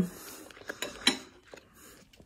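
A fork or spoon clicking lightly against a plate or bowl a few times during a mouthful of food.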